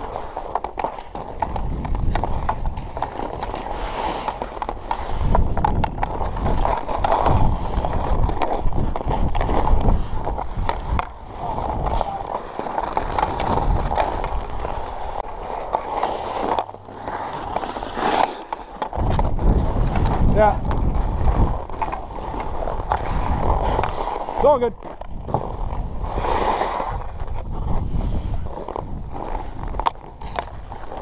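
Hockey skate blades scraping and carving across outdoor rink ice in an irregular stream of strides and stops, with wind rumbling on the camera's microphone.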